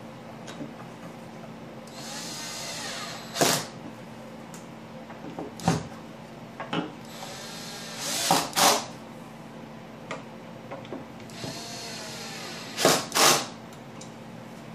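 Cordless drill/driver driving screws through wooden hold-down clamps into a CNC router's spoil board. The motor runs in three short bursts, about two, eight and twelve seconds in, with loud sharp knocks around them.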